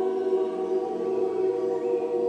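A group of singers holding an improvised vocal tone cluster: many voices sustain close, steady pitches together as one dense chord.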